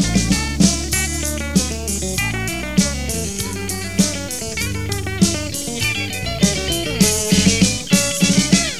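A progressive rock band playing an instrumental passage: electric guitar runs over drum kit, with steady drum hits throughout.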